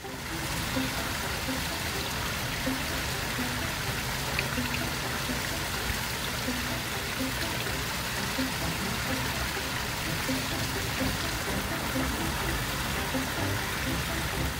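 Steady rush of water from a small waterfall spilling into a pond.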